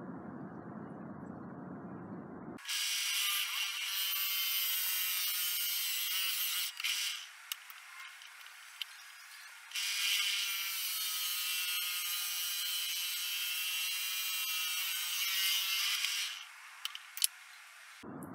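Benchtop drill press driving a 1½-inch (3.8 cm) hole saw through a wooden block: two stretches of steady, high-pitched cutting noise, the first about four seconds and the second about seven, with a short pause between. A few sharp clicks come near the end.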